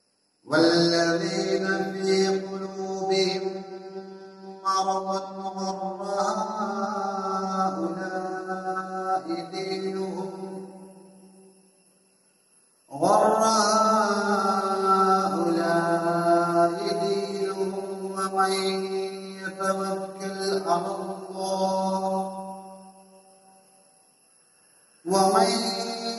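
A man reciting the Quran in Arabic in a slow, melodic chanted style. The recitation comes in two long held phrases of about ten seconds each, separated by a breath pause, with a third phrase beginning near the end.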